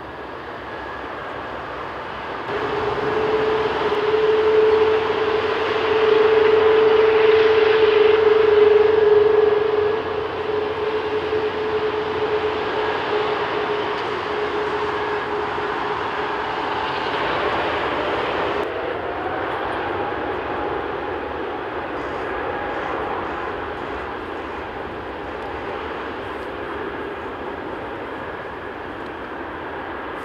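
An Airbus A380's four Rolls-Royce Trent 970 turbofans running at take-off power during the take-off roll. The jet noise carries a steady droning tone and is loudest from about six to ten seconds in. It then eases as the aircraft rolls away, with a rising whine a little past halfway.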